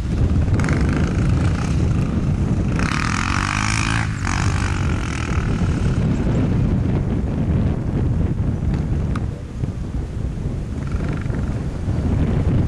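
Dirt bike engine running and revving, loudest from about three to five seconds in, under heavy wind rumble on the microphone.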